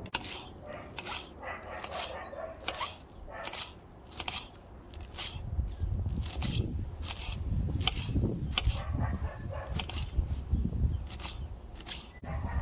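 Kitchen knife chopping fresh parsley on a wooden cutting board: a run of sharp, irregular chops, roughly one or two a second.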